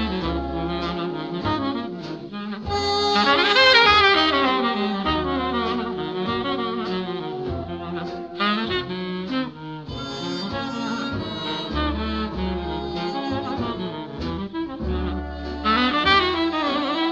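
Tenor saxophone playing a jazz melody, with low bass notes underneath. The saxophone line swells loudest about three to four seconds in.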